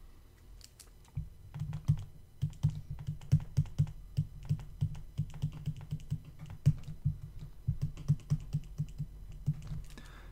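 Stylus tapping and clicking against a tablet screen during handwriting: a quick, irregular run of small taps that starts about a second in.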